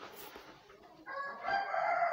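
A long animal call with a clear pitch and several overtones, starting about halfway in and still going at the end.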